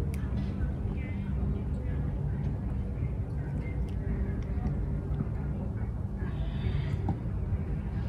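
A steady low mechanical hum, like a motor running, with a few faint small clicks.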